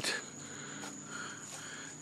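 Night insects trilling steadily: one constant high-pitched tone under faint outdoor background noise.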